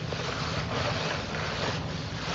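Steady hiss of background noise from an open microphone carried over a voice-chat stream, with no other sound standing out.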